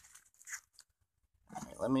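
A sharp click, then a few faint, brief rustles of trading cards and packaging being handled, with a near-silent gap before speech near the end.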